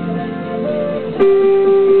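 Digital keyboard played on a piano voice, sustained notes with a new, louder chord struck a little over a second in and held ringing.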